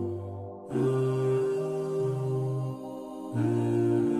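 Background nasheed of wordless humming vocals only, no instruments: long held notes with short breaks about half a second in and again near three seconds.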